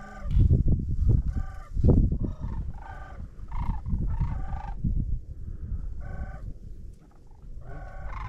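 Sandhill cranes calling overhead: short, repeated rattling calls, about two a second, rising and falling as the flock comes in.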